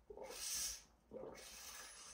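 A person drinking from a plastic water bottle with a spout lid: two faint airy stretches of sipping and breathing, the first, about a second long, louder than the second.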